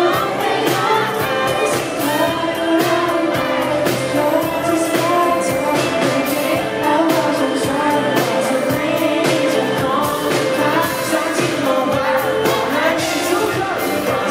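Male pop vocalist singing live into a microphone over a full band, with electric guitar and a steady drum beat, through a concert PA.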